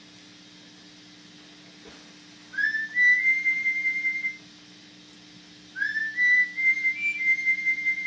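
A person whistling high notes in two phrases over a steady low hum. The first phrase slides up and is held for about a second and a half, starting about two and a half seconds in. The second starts about six seconds in and steps up and down.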